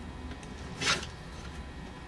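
A rotary cutter drawn once along a ruler through layered fabric strips on a cutting mat, trimming off the selvage: one short scratchy zip about a second in.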